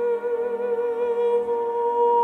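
Mezzo-soprano holding one long sung note with vibrato over sustained chords on the Albert Baumhoer pipe organ (2018, three manuals and pedal, 42 stops).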